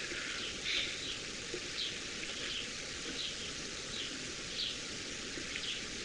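Faint outdoor background: short bird chirps every second or so over a steady hiss.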